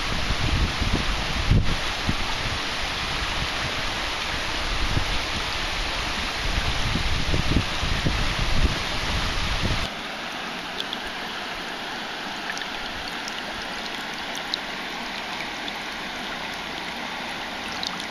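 Shallow river running over stones, with wind buffeting the microphone in low rumbles for the first half. About halfway through, the sound changes suddenly to a steadier, closer rush of water with a few faint ticks, as a hand holds the fish in the current.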